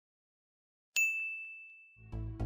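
A single bright ding, a chime effect for the animated logo reveal, struck about a second in and ringing on one high note as it fades away.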